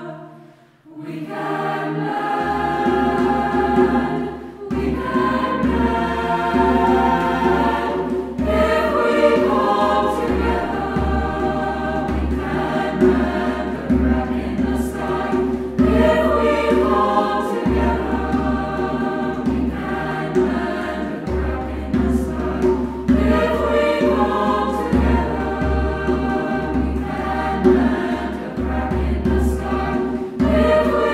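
Choral music: a choir singing, with a steady low bass underneath, after a brief drop in level about a second in.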